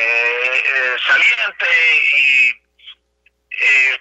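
A man speaking over a telephone line, with a thin, tinny tone. The speech breaks off for about a second near the end, then resumes.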